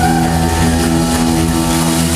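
Live beat band holding one sustained chord: electric guitars, bass and keyboard ring out as a steady drone, with no singing over it.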